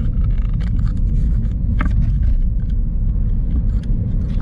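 Car cabin noise while driving: a steady low rumble of road and engine, with scattered light clicks and knocks, one a little stronger about halfway through.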